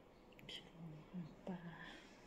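Soft, hushed speech: a person talking quietly, close to a whisper, in a few short phrases.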